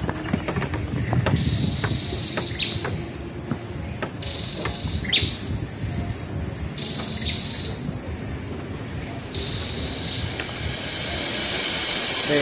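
A bird calling four times, about every two and a half seconds, each call a high held whistle that ends in a quick downward slur. Under it are scattered footsteps and knocks on a wooden plank boardwalk.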